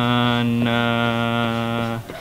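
A voice holding a long, drawn-out syllable on one flat, unchanging pitch, like a chant, with a brief change in the sound about half a second in. It is the word 'menerima' being sounded out slowly while it is written.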